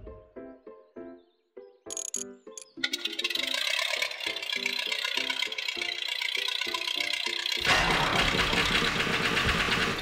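Playful staccato background music; about three seconds in, a cartoon engine-and-propeller sound for an early biplane joins it as a steady noisy drone, growing deeper and louder for the last two seconds.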